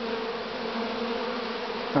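Honeybees buzzing in flight at the hive entrances, a steady low hum from many bees at once. It is the busy flight of colonies woken up and active after winter.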